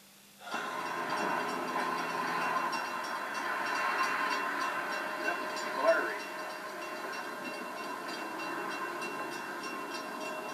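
Trackside train sound from a railfan video playing through a television's speakers, starting about half a second in as the video finishes loading and then running steadily.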